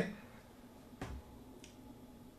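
A pause in a man's talk: low room noise with one soft, sharp click about a second in.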